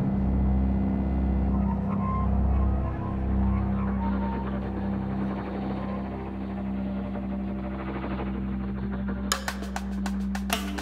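Contemporary music for a 23-piece ensemble with electronics: a steady low drone and a deep, swelling bass under a dense, noisy texture. Near the end, sharp percussive clicks break in.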